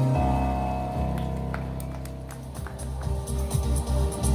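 Instrumental music played on Yamaha stage keyboards: a held chord slowly fades away, and new notes come in about two and a half seconds in.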